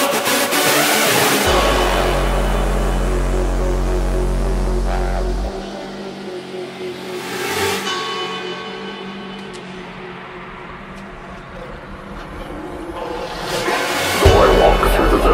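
Rawstyle hard dance music in a breakdown: the pounding kick drops out, a long deep bass note holds for a few seconds, and a noise sweep rises and falls about halfway through. Quieter sustained synth chords follow, building again as the beat returns near the end.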